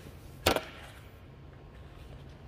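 A single sharp knock about half a second in, as someone climbs out of a car's back seat, followed by a low, steady background hum.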